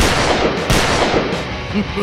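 Two sudden loud blasts, the second about two-thirds of a second after the first, each dying away over about a second, over light background music.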